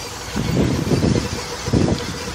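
A 1986 Chevrolet Caprice's 5.7-litre V8 idling low with the hood open, no knocking or ticking, under an irregular low rumble of wind buffeting the microphone that swells about a third of a second in.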